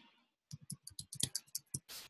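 Typing on a computer keyboard: a quick, uneven run of light keystroke clicks starting about half a second in.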